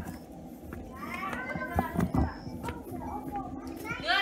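Young children's high-pitched voices calling and chattering, strongest in the middle, with a couple of dull low thumps.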